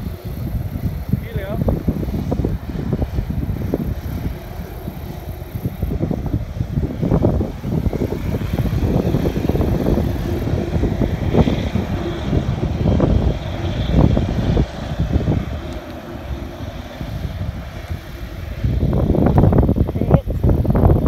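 Wind buffeting the microphone in irregular gusts, over the faint, distant sound of a widebody jet airliner's engines as it taxis.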